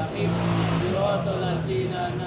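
A man's voice reciting a prayer aloud in a chanting delivery, with some notes held for up to about a second.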